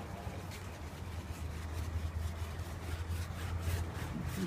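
Faint scratchy strokes of a bristle brush rubbing over a canvas as oil is brushed on, over a steady low hum.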